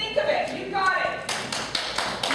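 A person speaking, then audience applause breaking out a little over halfway through and carrying on.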